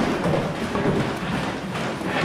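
A body scraping and bumping against the wooden walls of a tight plywood passage as a person squeezes through it, in irregular rubbing and several dull knocks.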